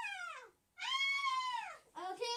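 Two long, high-pitched whines: the first falls in pitch, the second rises and then falls.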